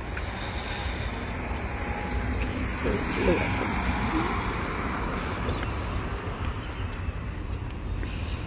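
Street traffic beside a pavement: a car drives past, swelling to its loudest about three seconds in, over a steady low rumble.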